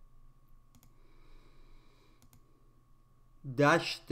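A few faint clicks, typical of a computer mouse, over a faint steady hum, then a man's voice starts speaking loudly near the end.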